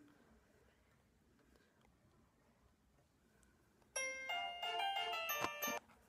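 A short chiming jingle of bell-like notes played through a phone's speaker by a fake Santa-call app, the call ringing in. It starts about four seconds in after near quiet and lasts about two seconds.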